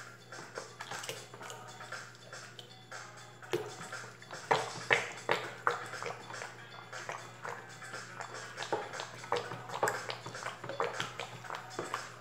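Background music, with the repeated clicks and sloshing of a plastic stirrer working a liquid soap mixture in a plastic basin. The strokes get busier from about a third of the way in.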